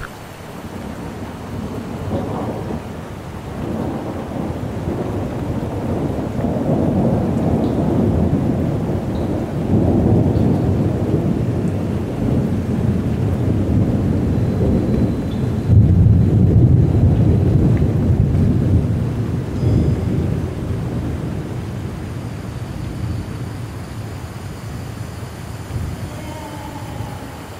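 A low, rolling rumble that swells and fades in waves, loudest a little past the middle.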